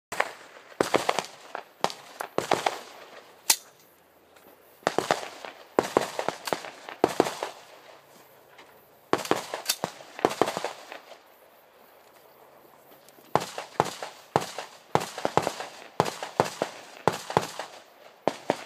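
Rifle gunfire from nearby stages: quick strings of sharp shots, several a second, each followed by a short echo, with pauses of a second or more between strings.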